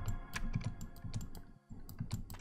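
Rapid, irregular clatter of computer keyboard keys and mouse clicks, with a brief pause near the end.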